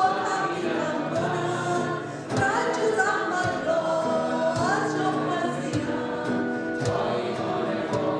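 A Persian-language worship song performed live: a woman sings lead over electric and acoustic guitars and drums, with a few drum hits along the way.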